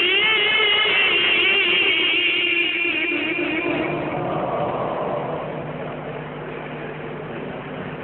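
A qari's Quran recitation ending on a long, high, wavering held note, which fades out over the first few seconds. A quieter noisy background with a steady low hum follows.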